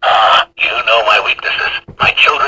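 A man's recorded voice speaking a quotation from the talking action figure's built-in speaker, starting abruptly, with a short break about half a second in.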